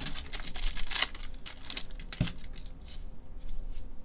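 Foil trading-card pack wrapper being torn open and crinkled in gloved hands: dense crackling for the first second and a half, then sparse rustles, with one soft knock a little after two seconds.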